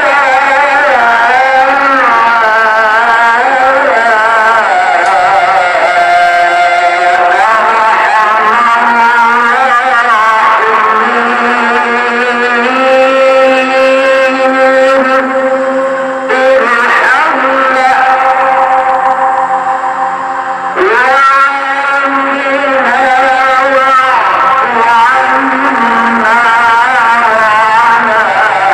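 A solo voice chanting the tarhim in ornate, melismatic mawal style, unaccompanied: long held notes with wavering vibrato, and a couple of sweeping rises in pitch past the middle.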